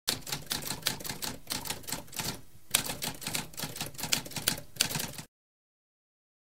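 Typewriter typing: rapid keystrokes in quick succession, with a brief pause about two and a half seconds in, then stopping abruptly about five seconds in.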